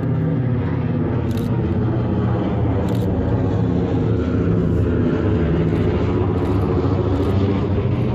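Radial piston engines of a four-engine WWII bomber droning overhead: a loud, steady, low multi-engine throb.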